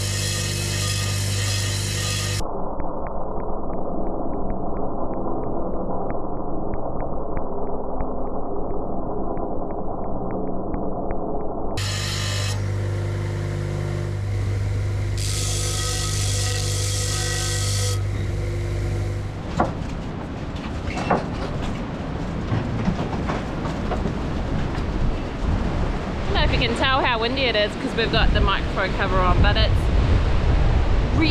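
Shearing grinder's electric motor running with a steady hum while steel shearing combs are ground against its spinning disc, the grinding bright and gritty at times. About twenty seconds in it gives way to gusty wind buffeting the microphone in a strong nor'west gale.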